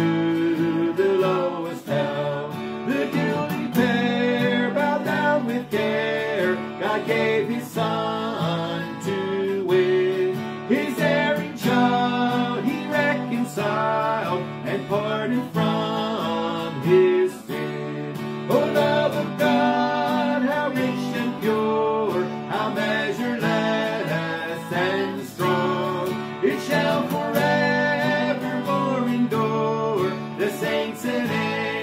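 A woman singing a hymn over strummed acoustic guitar, with a man playing a melody on a harmonica held in a neck rack.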